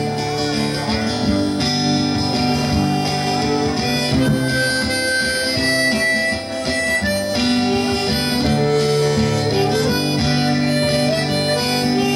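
Live acoustic guitar with harmonica playing long held notes over it.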